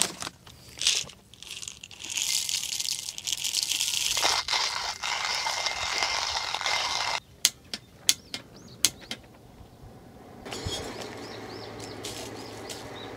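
Stainless steel hand coffee grinder being cranked, its burrs grinding coffee beans in a steady run from about two seconds in until about seven seconds in. A few sharp clicks come before and after.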